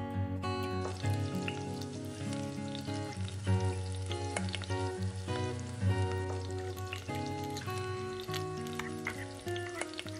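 Food crackling and sizzling in hot oil in a miniature wok over a small flame, starting just under a second in. Background acoustic guitar music plays under it.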